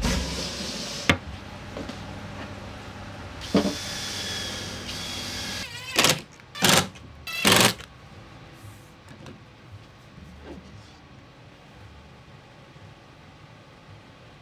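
Cordless drill driving screws into the plywood bottom of a drawer box: three short, loud bursts of the drill just past the middle. Before them the wooden box is handled, with a sharp knock early on.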